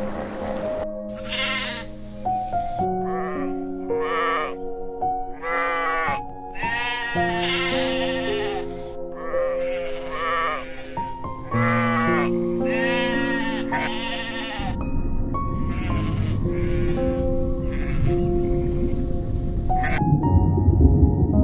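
Repeated bleating animal calls, each a second or less long, over gentle background music. A steady low noise joins for the last few seconds while fainter calls continue.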